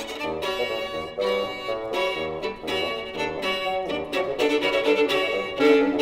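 Violin playing a fast passage of many short, quickly changing notes, with a double bass sounding low notes beneath it.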